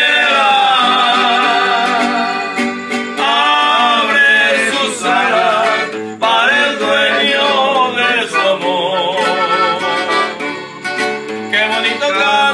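Accordion and guitar playing a Mexican folk tune, with the accordion carrying the melody.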